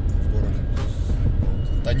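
Steady low rumble of engine and road noise inside the cabin of a moving VAZ-2110 car.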